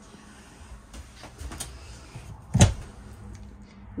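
Mirrored medicine cabinet door being opened: a few light clicks, then one sharp clack about two and a half seconds in.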